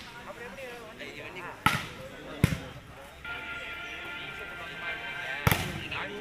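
A volleyball being struck by hand three times during a rally: sharp slaps about a second and a half in, again just under a second later, then once more near the end. Voices are heard underneath, with a steady tone joining about halfway through.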